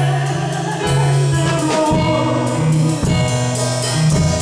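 Gospel worship song: a woman singing into a microphone over an instrumental backing with a steady beat.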